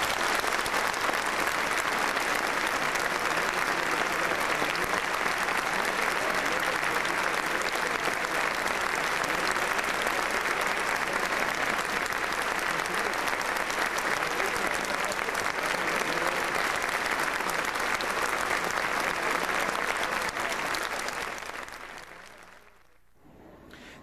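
Audience applauding steadily after an orchestral piece, then fading out near the end.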